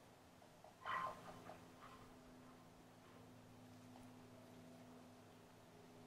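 Near silence with a faint steady hum. About a second in comes one brief, soft whine from a German shepherd mix, followed by a few fainter short sounds.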